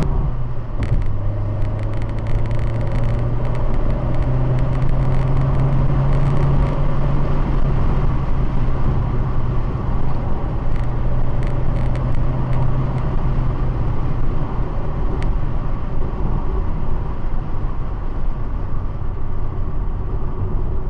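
A car being driven, heard from inside the cabin: a steady low drone of engine and road noise with a low engine tone running under it.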